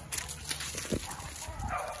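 Pit bull puppy giving short, excited barks while lunging after a flirt-pole lure, with scuffling on the ground.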